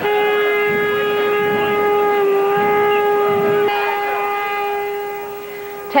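A single horn-like tone held steady for several seconds over the noise of a marching crowd, easing off a little near the end.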